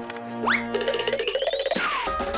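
Comic sound-effect sting over music: a quick rising boing-like glide about half a second in, then a longer upward-sliding glide with a fast patter under it that drops away near the end.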